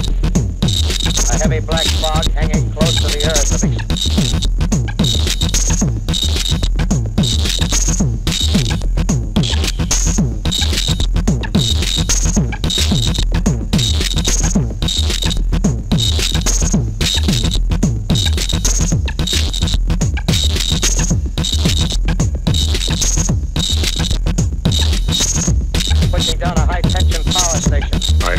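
Eurorack modular synthesizer (Doepfer modules with a Sherman Filterbank and Frequen Steiner) playing a pulsing electronic noise-drone piece: a steady low drone under repeating high tones, chopped into a rhythm by short regular gaps.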